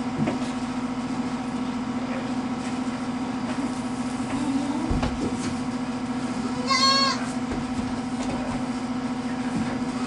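A goat bleats once, a short wavering call about seven seconds in, over a steady low hum.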